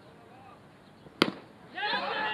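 A single sharp crack of a baseball bat hitting a pitched ball, about a second in, with a brief ring after it. Players start shouting near the end.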